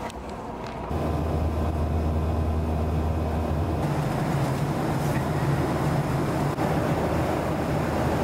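Airliner cabin noise in flight: a steady low drone of engines and rushing air. It sets in about a second in after a quieter start and shifts slightly in tone about four seconds in.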